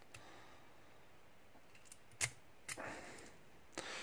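A few small metallic clicks and short scrapes as a key is worked out of a brass lock cylinder's keyway, the key catching as it comes. The sharpest click comes about two seconds in.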